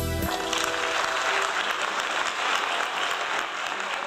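A live band's final chord on keyboard and electric guitar cuts off just after the start, and an audience breaks into steady applause that fills the rest.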